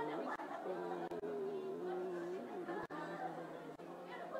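A man's voice singing slowly in long held notes, with a murmur of other voices behind it.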